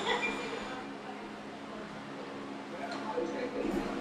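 Low room sound: a steady low hum with faint voices murmuring in the background.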